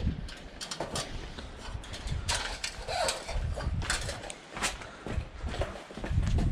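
Scattered light knocks and clicks from handling a metal rain gutter and the frame of a steel scaffold, a few of them a second or so apart, over a low rumble.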